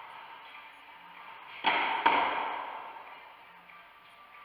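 A unicycle and rider crashing down on a hardwood court floor after a failed trick: two sharp impacts about half a second apart, the second the loudest, ringing on in the bare squash court.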